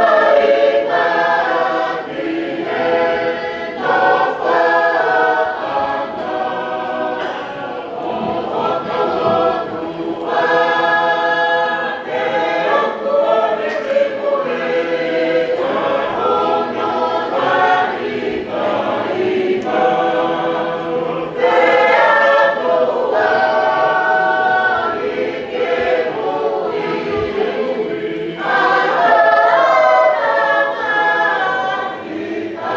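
A group of voices singing a hymn unaccompanied, in slow phrases of held notes.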